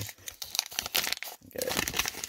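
Wax-paper wrapper of a baseball card pack being torn open and crinkled by hand: irregular crackling and tearing, briefly quieter a little past halfway.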